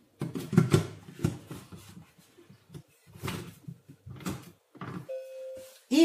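Lid of a Monsieur Cuisine Connect food processor being fitted and locked onto its stainless steel mixing bowl: a series of irregular plastic clunks and clicks, then one short steady beep from the machine near the end.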